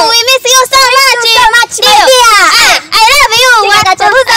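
Very high-pitched, sing-song voices chattering, the pitch swooping up and down with only brief pauses.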